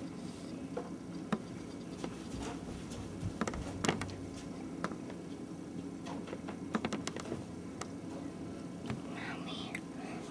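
Scattered small clicks and ticks from a mouse nosing and nibbling at the bait on a wooden snap trap without setting it off, over a steady low hum.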